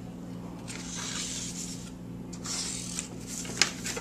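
Cardboard being handled and folded over on a table, rubbing and scraping in two passes of about a second each, with a couple of light clicks near the end.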